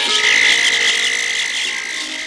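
Jungle ambience sound effect: a steady high-pitched trill with busy chirring above it sets in just after the start, over the tail of the background music.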